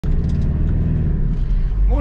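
Car engine and road noise droning steadily inside the cabin while driving, the low engine tones shifting about a second in.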